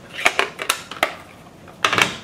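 Several light clicks and taps of stamping supplies being handled on a table, followed by a louder knock just before the end.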